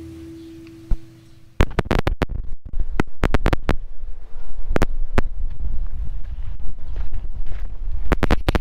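Acoustic guitar music fading out over the first second and a half. It is followed by a loud rumble of wind buffeting the microphone, broken by irregular sharp clicks and scrapes.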